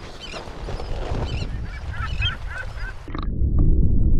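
Birds calling in short repeated notes, several to the second, over a low wind rumble. About three seconds in the sound cuts abruptly to a muffled underwater rumble.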